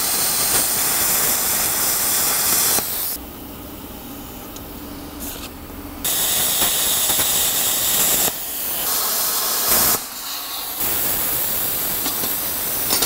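Plasma cutter cutting sheet steel: a loud, steady hiss of the cutting arc and air. It drops to a quieter hiss about three seconds in, comes back loud about six seconds in, then eases and briefly cuts out around ten seconds before starting again.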